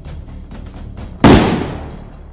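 A single loud pistol shot a little over a second in, dying away over about half a second, over steady background music.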